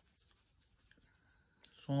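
Near silence with a few faint small ticks, then a man starts speaking near the end.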